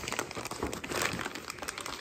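Clear plastic parts bags crinkling and rustling in irregular crackles as hands dig through them and lift one out of a cardboard box.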